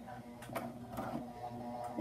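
Sewing machine running slowly, stitching in reverse with a zigzag stitch through cotton sash cord: a faint steady motor hum with a few light ticks.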